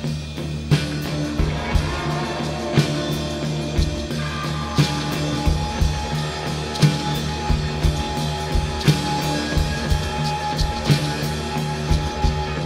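Rock band playing: drum kit and guitar over a steady low bass line, with drum and cymbal hits about once a second and a heavier accent about every two seconds.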